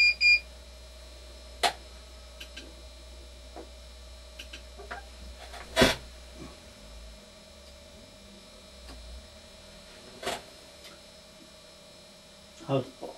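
Short electronic beeps right at the start, then a faint steady electrical hum with three sharp clicks, the loudest about halfway through.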